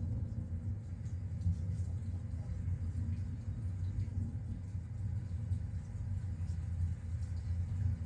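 A steady low machine hum, unchanging throughout, with no other distinct sound on top.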